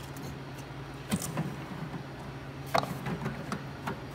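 Plastic yogurt cups being set down and shifted on a refrigerator's wire shelf, giving a few light knocks, the sharpest near three seconds in. Under them runs the steady low hum of the refrigerator.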